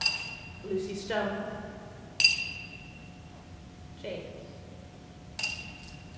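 A china plate clinking three times as it is handled, each clink sharp with a short high ring; the middle one, about two seconds in, is the loudest.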